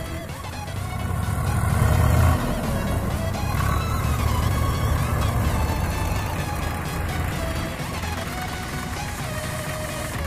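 Tractor diesel engine working under load while pulling a tractor stuck in mud. It grows louder to a peak about two seconds in, drops off suddenly, then runs on steadily. Background music plays over it.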